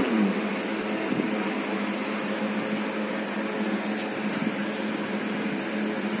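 A steady mechanical hum: one constant low tone with a whirring noise over it, unchanging throughout.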